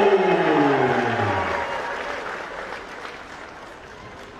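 Crowd applauding and cheering a fighter's introduction, fading steadily. Over it, the announcer's long, drawn-out call of the fighter's name falls in pitch and ends about a second and a half in.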